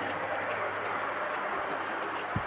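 Steady background hiss with a faint low hum, with no distinct knocks or clicks.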